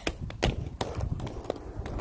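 Low rumble with several sharp knocks and taps: handling noise on a hand-held phone's microphone.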